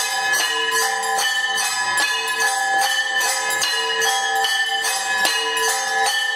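Temple bells rung rapidly and without a break for an aarti, several strikes a second over a steady ringing.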